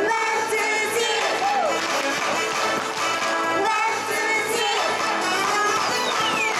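Japanese idol-pop backing track playing through a PA loudspeaker, a continuous melody without pauses.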